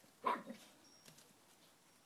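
A dog giving one short, loud woof that drops in pitch, about a quarter second in.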